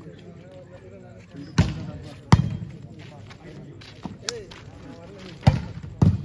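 A volleyball being struck by players' hands during a rally: sharp slaps about a second and a half in, again under a second later (the loudest), and once more near the end. Faint spectator voices run underneath.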